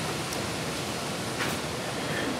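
Steady background hiss of room noise, like ventilation running, with a faint click about one and a half seconds in.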